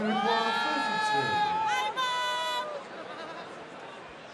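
Arena crowd singing, with one voice standing out, holding two long notes that each fall away at the end, then a low crowd murmur.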